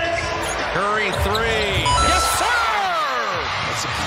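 Basketball being dribbled on a hardwood court during live play, with sneakers squeaking in several falling squeals in the second half.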